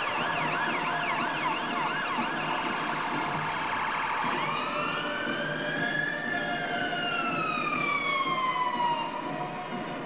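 Ambulance siren sounding: a fast up-and-down yelp, about three sweeps a second, for the first few seconds, then switching to a slow wail that rises and falls once over about five seconds, dying away near the end.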